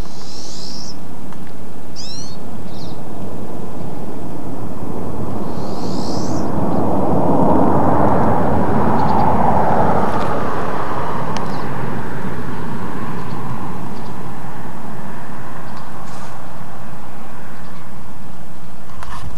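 Outdoor ambience: a steady rushing noise that swells and fades about halfway through, with a few short, high bird chirps in the first several seconds.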